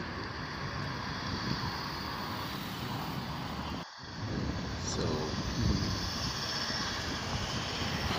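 Steady road traffic noise from cars driving past. The noise cuts out briefly about halfway through.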